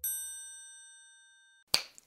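A single bright, bell-like ding sound effect, struck once and ringing out high for about a second and a half before fading away. A short burst of noise follows near the end.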